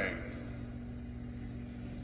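Steady low electrical-sounding hum with a faint constant tone, unchanging throughout.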